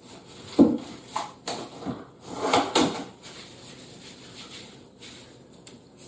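Kirkland Stretch-Tite plastic cling wrap being pulled from its box and crinkled around a cut onion, in several short rustling bursts over the first three seconds, then quieter handling.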